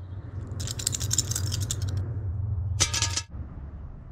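Plastic two-colour counters rattling as they are shaken, then a short clatter with a slight ring as they drop onto a glass tabletop about three seconds in, over a low hum.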